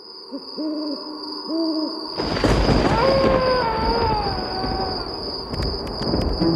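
Sound-effect owl hooting a few times, then a rush of noise with a low rumble and a wavering tone that slowly falls in pitch, under a steady high whine; spooky night ambience.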